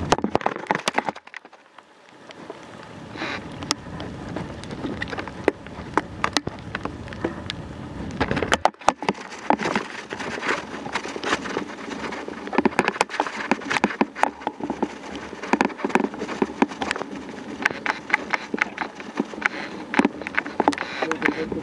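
Riding noise of a bicycle on a rough forest track: a steady hiss with many sharp knocks, clicks and rattles, dipping briefly about a second in and again about halfway.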